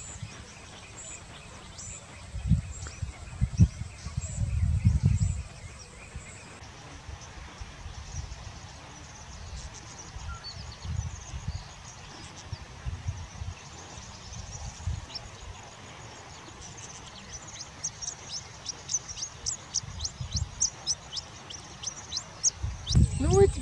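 Small birds calling: a thin, very high note repeats about once a second for the first six seconds, then short, high, falling chirps come several a second and grow denser over the last five seconds. Under them is a low rumble that swells around the fourth and fifth seconds.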